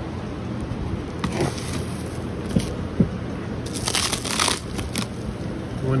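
A beehive being opened: two spells of crunching, crackling scrapes, one about a second in and a longer one around four seconds in, with a couple of sharp knocks between them.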